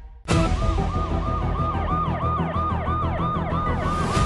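Emergency-vehicle siren sweeping up and down about twice a second over a steady low rumble, starting suddenly just after a brief hush.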